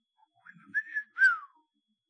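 A person whistling two short notes, a level one followed by one sliding down in pitch.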